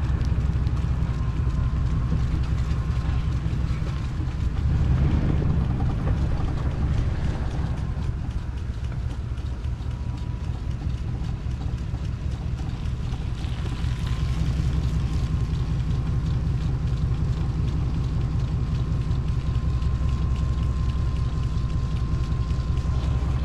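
Vehicle engine running steadily at low speed, a low rumble with a faint thin steady whine over it.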